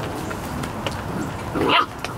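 A Vizsla puppy gives one short yipping bark about one and a half seconds in, while the litter play-fights.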